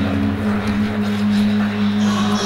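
Figure-skating program music holding a low, steady chord.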